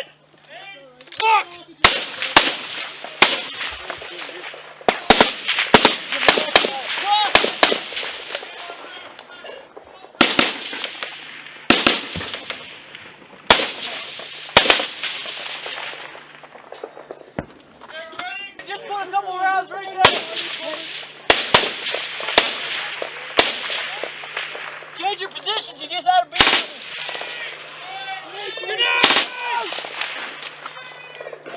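Small-arms gunfire in a firefight: irregular single rifle shots and quick clusters of shots, each a sharp crack echoing off the surrounding mud walls. Shouting breaks in between the shots in the second half.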